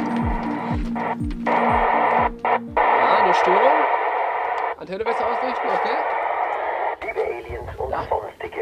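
Radio static from a mobile radio transceiver as its knob is turned: a steady hiss with warbling, wavering tones. Electronic music with falling bass sweeps fades out about three seconds in.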